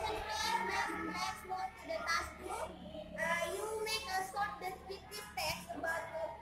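High young voices singing, with a steady low hum underneath.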